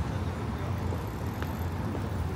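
City street ambience: a steady low rumble of road traffic, with a faint tick about one and a half seconds in.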